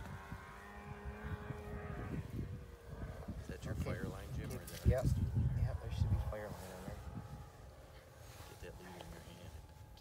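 Indistinct voices with low wind rumble on the microphone, loudest about five to six seconds in; a steady droning tone runs through the first two seconds.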